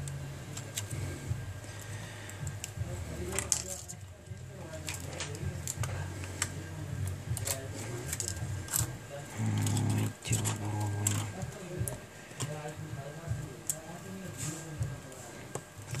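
Scattered small clicks and taps of a smartphone's display module and its flex cables being handled and lined up against the opened phone, over a steady low hum.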